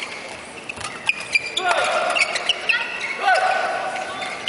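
Men's doubles badminton rally: from about a second in, rackets hit the shuttlecock in sharp clicks and shoes squeak on the court mat, with voices in the hall.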